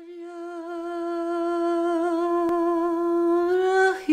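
A single voice humming one long held note that swells gradually louder, rising slightly in pitch just before it breaks off. A faint click sounds about halfway through.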